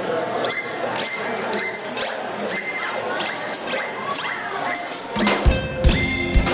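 Live band opening a song: a high, repeated melodic figure that bends down in pitch about twice a second. About five seconds in, bass and kick drum come in with a few loud hits.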